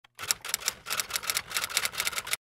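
Typewriter typing sound effect: a quick, even run of key clicks, about eight a second, starting a fifth of a second in.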